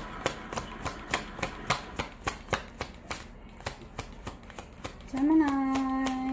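A deck of tarot cards shuffled by hand, crisp card snaps about three a second. Near the end a voice hums one long held note.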